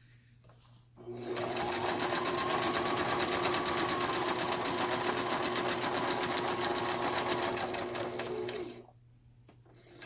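Domestic electric sewing machine stitching: about a second in the motor whine climbs to speed, runs steadily with the rapid ticking of the needle, then slows and stops about a second before the end.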